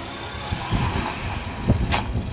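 Main rotor of a 450-size RC helicopter whooshing in autorotation, the motor held off, as it flares and comes down to the grass, with wind rumbling on the microphone. A sharp click comes just before the end.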